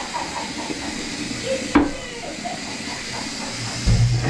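Water sloshing in a paper-clogged toilet bowl as a gloved hand works in it, over a steady hiss, with a sharp knock a little before halfway and a low thump near the end.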